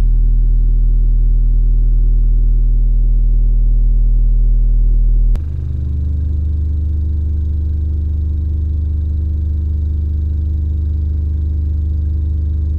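Seismic LAF124 subwoofer in a ported 1.6 cu ft box tuned to 36 Hz, playing a loud steady bass test tone. About five seconds in, the tone switches abruptly to a somewhat higher bass note and holds steady.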